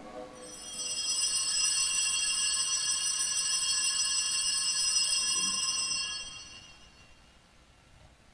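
Altar bells (sanctus bells) rung continuously at the elevation of the chalice after the consecration: a bright, many-toned ringing that builds in about half a second, holds steady for about five seconds and then dies away.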